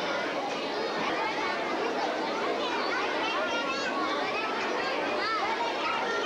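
Many children talking and calling out over one another, a steady hubbub of overlapping kids' voices with no single voice standing out.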